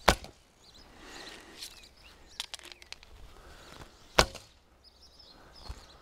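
Two shots from a long Turkish bow: the bowstring snaps on release right at the start and again about four seconds in, with a few faint clicks between.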